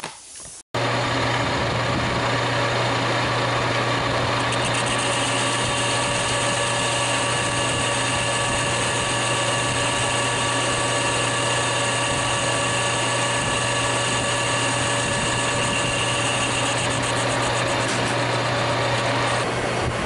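Metal lathe running and cutting a steel ring held in its chuck, a steady motor hum under a higher whine. A brighter cutting tone comes in about four seconds in and drops away a few seconds before the end.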